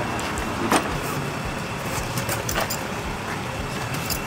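A steady low rumble like a running vehicle, with a few sharp clicks and light rustles from a boxed power tool and its packaging being handled and opened.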